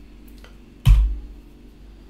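A single sharp, loud computer-keyboard keystroke about a second in, with a fainter key click just before it, over a low steady background.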